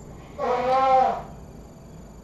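A man's drawn-out, wordless vocal sound under a second long, rising a little then falling away: a hesitant thinking noise while trying to recall something.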